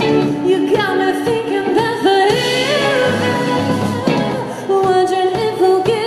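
Live indie synth-pop band playing: a woman singing lead over electric guitars, drums and keyboard.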